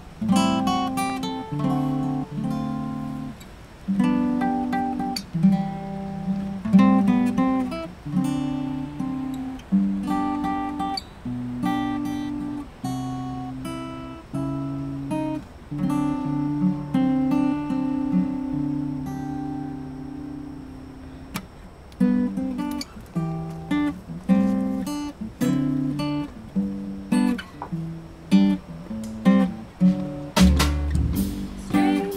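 Acoustic guitar played solo, plucked chords and notes ringing out and decaying in a steady rhythm: the song's instrumental opening, before the vocals come in.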